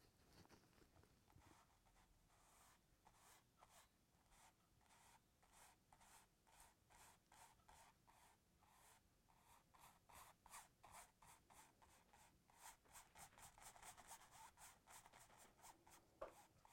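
Near silence with faint, scratchy strokes of a flat brush dry-brushing oil paint onto stretched canvas, coming more often and a little louder in the last few seconds.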